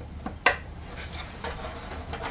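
Plastic top cover of a vacuum cleaner powerhead being lowered and fitted onto its base: a sharp plastic click about half a second in, then faint rubbing and handling of the plastic housing.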